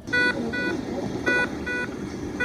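Hospital medical-equipment alarm beeping: a longer beep followed by a shorter one, the pair repeating about every 1.2 seconds over a steady room hum.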